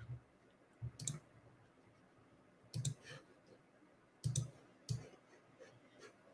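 Computer mouse clicking: about five separate sharp clicks spaced a second or two apart. The mouse is a noisy one.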